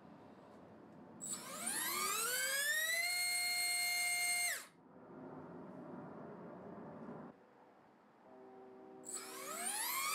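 SunnySky R1408 3200KV brushless motor on a thrust stand, running on 4S and spinning a three-inch DYS 3030 three-blade prop. It gives a whine that rises in pitch for about two seconds, holds steady at full throttle, then ends abruptly. Near the end the motor spins up again on a RotorX RX3044T prop, its whine rising once more.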